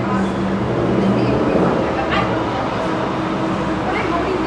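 City street noise: a steady rumble of traffic with people's voices.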